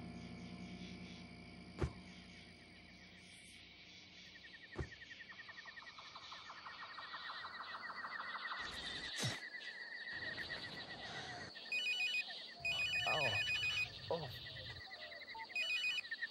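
A mobile phone ringing in short repeated electronic bursts, starting about three quarters of the way in and coming again near the end. Under it runs a steady, fast pulsing trill of jungle ambience.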